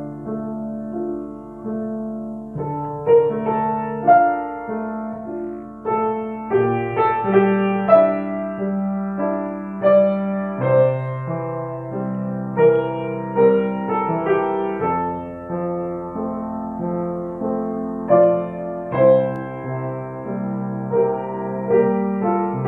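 Grand piano played with both hands: a slow, legato melody over held bass notes, in a three-against-two rhythm between the hands.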